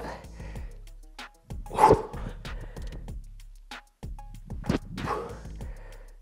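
A man doing jump squats: shoes landing on the floor with short thuds, and a forceful huffing exhale with the jumps about two seconds and five seconds in.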